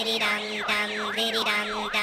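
Siren-like sound effect in intro music: a wailing tone sweeping rapidly up and down about twice a second, over a steady low drone and a beat.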